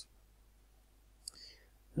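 Near silence: room tone, with one brief, faint noise a little past the middle.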